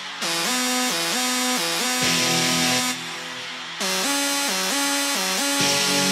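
Electronic dance music with no vocals: a synth melody stepping up and down in pitch over a dense bright layer, dipping briefly in level about three seconds in.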